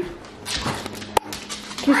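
A dog whimpering, with a sharp click about a second in.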